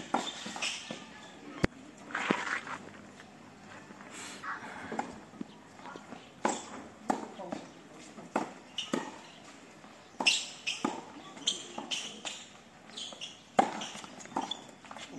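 Tennis balls struck by rackets and bouncing on a hard court during a doubles rally: a series of sharp, irregularly spaced hits, with footsteps on the court between them.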